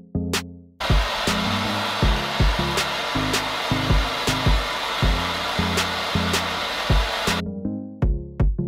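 Handheld gas torch burning with a steady hiss, lit about a second in and shut off near the end, heating metal dart fittings to melt them into a PVC piece. Electronic music with a beat plays under it.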